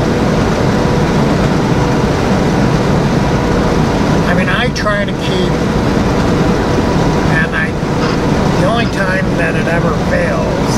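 Steady road and engine noise inside a semi-truck's cab at highway speed, with a few brief snatches of a voice about halfway through and near the end.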